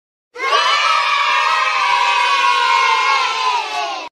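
A group of children cheering together in one long held shout that starts just after the opening. Its pitch sags a little toward the end, and it stops abruptly.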